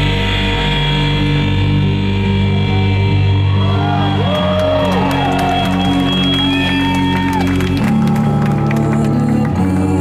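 Live rock band holding sustained, ringing electric-guitar chords, with the crowd whooping and cheering over it from a few seconds in. The held notes shift to a new chord a little before the end.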